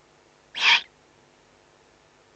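Eurasian eagle owl chick giving a single short, hoarse rasping call about half a second in, the begging call of an owlet at the nest.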